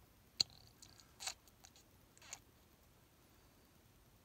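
Faint handling of a plastic transfer pipette at a glass beaker: one sharp tick about half a second in, a few softer clicks, and two short squishy rustles before it goes still.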